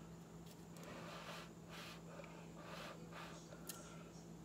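About five short, faint puffs of breath blown by mouth across wet acrylic paint, pushing the poured layers outward to open up cells in a bloom pour.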